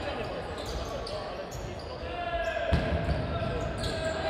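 Futsal play in a sports hall: the ball being kicked and bouncing on the wooden court, with a few sharp knocks and players' calls echoing in the hall.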